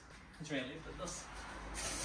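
A short murmur of voice, then near the end an aerosol can of brake cleaner starts spraying with a steady hiss.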